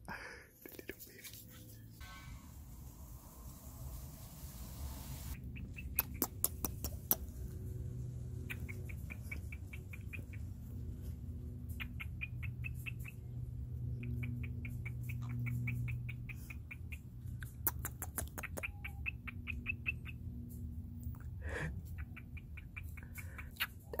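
Cockatiels giving rapid, pulsing chatter in repeated bursts of about a second each, with a few sharp clicks between them. A low steady hum runs underneath.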